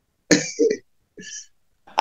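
A person's short cough-like vocal sound, then a faint breathy hiss, carried over a video-call audio feed.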